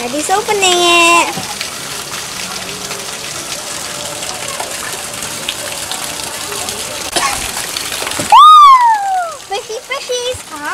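Steady rush of running water. A high voice calls out briefly about half a second in, and near the end comes a louder, high call that falls in pitch.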